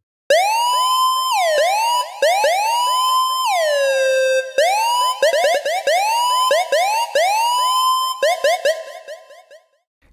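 Dub siren synth patch from the Phasemaker FM synth, run through a compressor: a loud, bright tone rich in overtones swooping up in pitch again and again over about an octave. Near the middle one long glide falls back down; after that the upward swoops come faster, and the sound fades away near the end.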